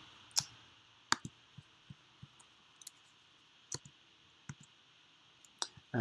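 Irregular sharp clicks from operating a computer, about nine spread unevenly over several seconds, over a faint steady hiss.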